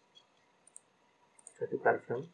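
A few faint computer mouse clicks, two of them in quick pairs, followed near the end by a man starting to speak.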